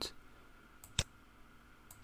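A single sharp computer mouse click about halfway through, with a couple of fainter ticks around it, against otherwise near-silent room tone.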